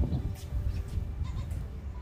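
Wind buffeting the microphone outdoors: a loud, gusting low rumble.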